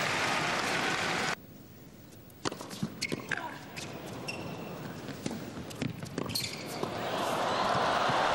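Crowd applause that cuts off abruptly about a second in. It is followed by sharp single knocks of a tennis ball being bounced and struck on an indoor hard court, a few at a time over the next few seconds, with the arena noise building again near the end.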